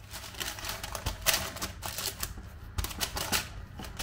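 Baking parchment crackling and rustling under hands as pieces of dough are laid and pressed into a paper-lined baking tin, in quick, irregular crackles.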